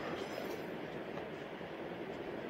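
Steady low background hiss of room tone, with no distinct handling or cutting sounds.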